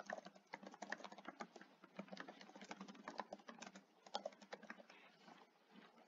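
Faint typing on a computer keyboard: irregular key clicks, stopping about five seconds in.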